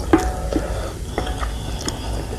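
A wooden spoon and fork stirring a thick, spicy noodle soup in a bowl, with wet sloshing of the broth. Twice the utensils knock against the bowl, which rings briefly: once just after the start and again a little past a second in.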